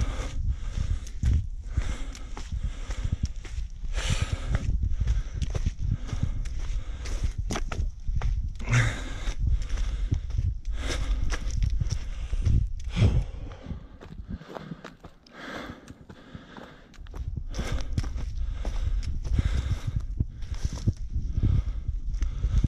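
Footfalls of a runner climbing a steep dirt trail strewn with leaves and bark, as a run of short crunching strikes over a steady low rumble. The sound drops away for a few seconds about two-thirds of the way through.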